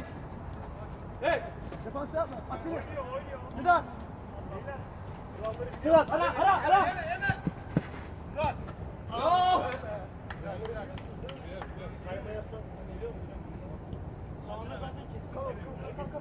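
Footballers shouting to one another across a small-sided artificial-turf pitch. There are a handful of short calls, the loudest about six and nine seconds in, over a steady low background noise.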